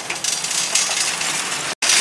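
An engine running under a steady haze of noise; the sound cuts out completely for an instant near the end.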